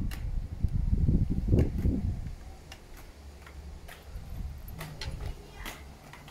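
A child's inline skates on an outdoor path: a low rumble of rolling wheels for the first two seconds, then irregular light clicks and taps as the skates strike and stride.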